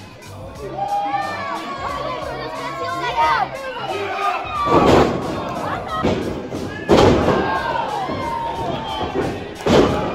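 Crowd in a large hall shouting and cheering at a pro wrestling match. Three loud thuds of wrestlers' bodies landing on the ring mat come about halfway through, two seconds later, and near the end.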